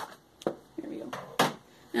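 Hands handling a small cardboard diaper box: a few sharp clicks and taps, the strongest about a second and a half in, with a short scraping rustle of cardboard around a second in.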